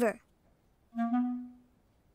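A single short clarinet-like woodwind note from the cartoon's score, about a second in, held steady for under a second and fading out.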